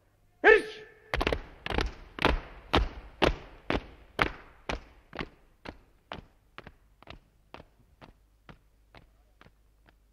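Boots marching in step, about two steps a second, growing steadily fainter as a squad marches away on the command to march.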